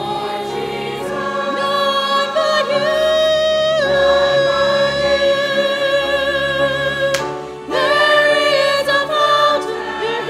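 Church choir singing a hymn in long held notes, with a woman singing lead on a microphone in front. The voices break off briefly about seven seconds in and then come back in.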